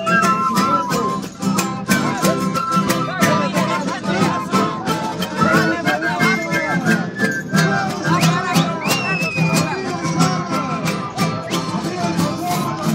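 Live folk music from a group of strummed acoustic guitars and smaller stringed instruments, played with a steady strummed rhythm, with voices mixed in.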